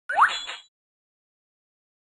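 A short cartoon 'plop' sound effect with a quick upward pitch sweep, lasting about half a second, from a children's phonics software menu as a unit button is selected.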